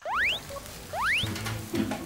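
Cartoon cooking sound effects: a crackling grill sizzle under two quick rising squeaky chirps about a second apart, as corn is basted on the grill. Light background music comes in partway through.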